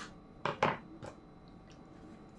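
Two short, wet sounds close together about half a second in, as a slice of ripe tomato is bitten into, followed by a few faint clicks.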